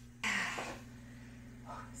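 A woman's short, breathy huff of effort, like a throat clearing, about a quarter second in as she gets up from lying on a bed, fading over about half a second. A faint steady room hum runs underneath.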